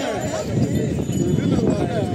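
Men's voices shouting and calling over a dense, low, rumbling clatter as handlers work a yoked pair of bulls at the stone block.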